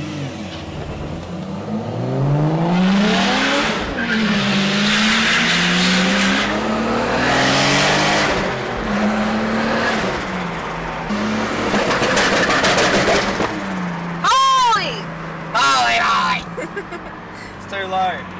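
Turbocharged BMW E46 engine heard from inside the cabin, accelerating hard through the gears: the pitch climbs over the first few seconds, drops at a gear change, then steps along and rises again. Near the end there are two short high-pitched squeals.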